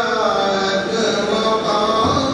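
A man chanting a hamd, a devotional poem in praise of God, solo and unaccompanied into a microphone, drawing out long melodic notes that bend in pitch.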